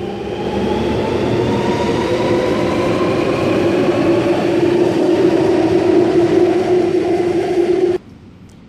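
Alstom Metropolis driverless metro train departing and accelerating: the electric traction motors give a whine that rises slowly in pitch over the rumble of the wheels, growing a little louder as the train speeds up.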